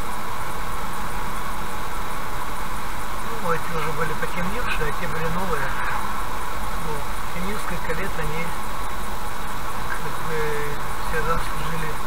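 Steady road and engine noise inside a car cruising along a highway, with a man's voice talking over it.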